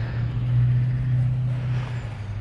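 A motor vehicle engine idling: a steady low hum that swells slightly about half a second in.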